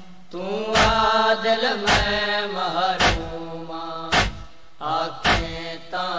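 Male voices chanting a Punjabi noha lament in long held lines. A sharp, regular thump of hands beating on chests (matam) keeps time about once a second, five strikes in all.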